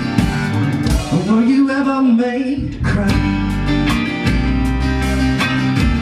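Live blues-rock band playing an instrumental passage: electric and acoustic guitars, electric bass and drums, with a Yamaha melodica. About a second in the bass and drums break off, leaving a held, bending note, and the full groove comes back near the three-second mark.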